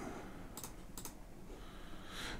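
A couple of faint computer keyboard key clicks over quiet room tone.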